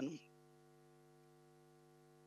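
Faint steady electrical hum of several even tones, left after the tail of a man's word ends about a quarter second in.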